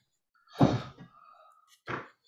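A person's voice: a brief breathy vocal sound about half a second in, and another short one near the end.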